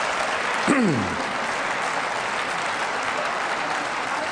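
Applause from part of a parliamentary chamber: steady clapping from a group of members, with one voice calling out in a falling tone about a second in.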